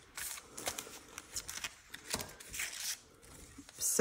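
Clear plastic packaging sleeve crinkling and laser-cut cardstock sheets sliding out of it, heard as a few short, soft rustles.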